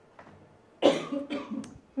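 A person coughing: a short run of coughs starting suddenly a little under a second in.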